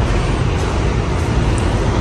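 Steady, even rushing background noise with no distinct sounds standing out.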